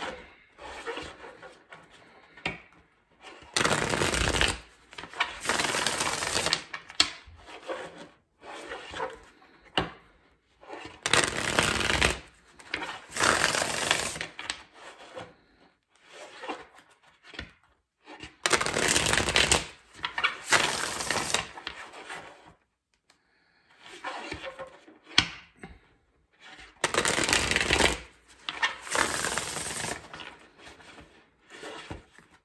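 A tarot deck being shuffled by hand: loud rustling bursts of cards about a second long, mostly in pairs, repeating roughly every seven or eight seconds, with quieter handling of the cards between them.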